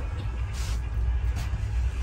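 Steady low rumble of a moving passenger train, heard from inside the coach.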